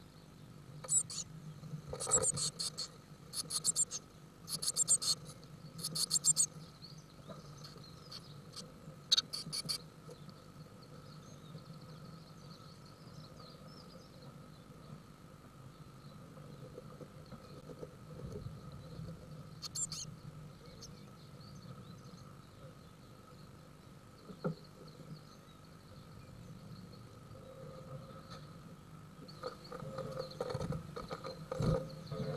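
Blue tits calling inside a nest box: short bursts of rapid, high, ticking chatter, several in the first ten seconds and once more about twenty seconds in, over a faint steady hum.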